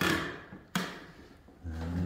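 Footsteps on bare wooden floorboards: two sharp knocks about three-quarters of a second apart. They are followed near the end by a short, low, steady hum.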